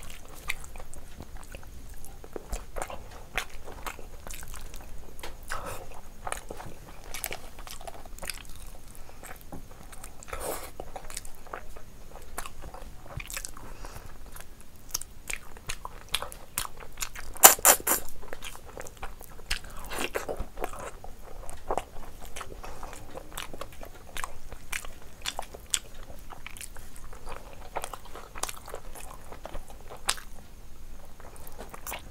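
Close-miked eating of meat curry and rice by hand: steady wet chewing and mouth sounds with many sharp crunches and clicks, the loudest burst of crunching about 18 seconds in.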